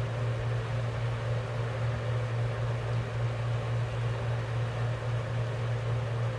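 A steady low hum with a faint even hiss over it, unchanging throughout.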